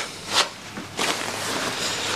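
A short breathy sound about half a second in, then a soft steady rustle of a leather jacket as a hand goes into its pocket for a handkerchief.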